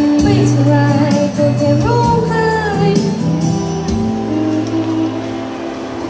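A boy singing a song into a microphone over backing music with sustained bass notes and light ticking percussion, all amplified through PA speakers. The percussion ticks fade out about halfway through.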